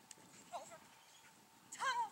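A handler's short, high-pitched shouted verbal cues to an agility dog: one brief call about half a second in, and a louder one near the end whose pitch rises and then holds.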